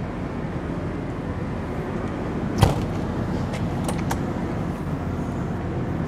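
A steady low mechanical hum, with one sharp click about two and a half seconds in and a few lighter clicks just after, typical of a motorhome's exterior storage-bay door latch being released and the door swung open.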